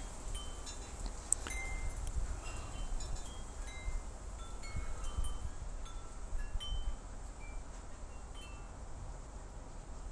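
Chimes ringing lightly and irregularly, with short high notes at several different pitches, over a steady low rumble.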